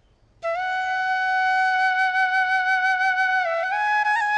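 Background music led by a flute: after a short silence it enters about half a second in on one long held note, then steps up slightly twice near the end.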